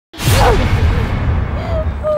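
A trailer sound effect: after a split second of silence, a sudden loud whoosh starts over a low rumble. Its high hiss fades away over about a second.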